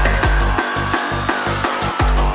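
Acidcore/hardtekno live set: a fast, even kick-drum beat with hi-hat ticks and a high held synth tone. About half a second in, the kick drops out, leaving the hi-hats and synth, and it comes back in at the end.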